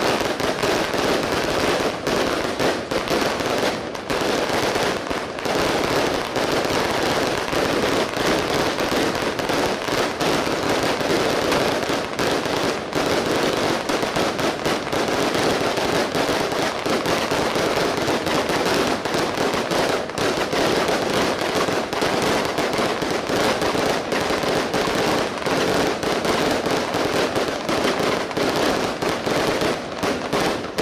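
Rows of firecracker strings laid along a road going off together: a dense, unbroken rattle of rapid bangs at a steady, loud level.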